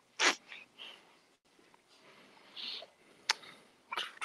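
Faint room noises: a short breathy burst just after the start, then scattered soft rustles and a single sharp click a little after three seconds in.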